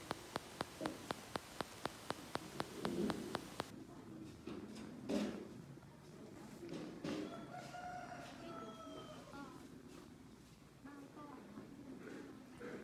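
A rooster crowing once, a long call about seven seconds in. Before it, a fast, regular clicking of about four or five clicks a second over a hiss cuts off abruptly after three or four seconds, and a single sharp knock follows about five seconds in.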